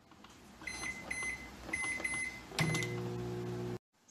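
Microwave oven keypad beeping, a series of short high beeps as the buttons are pressed. The oven then starts up and runs with a steady low hum, which cuts off abruptly near the end.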